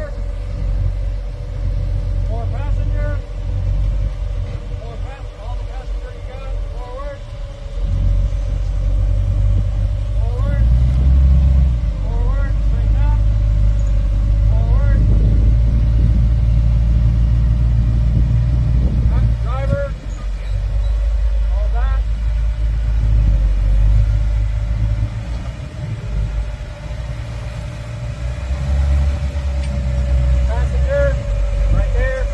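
Rock-crawling buggy's engine working at low speed as it climbs rock ledges, a low rumble that swells about eight seconds in, stays loud through the middle and dips briefly near twenty seconds.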